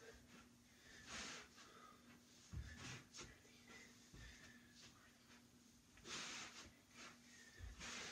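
Faint breathing of a man exercising: about four short exhalations, with a few soft thuds of sock-clad steps on carpet.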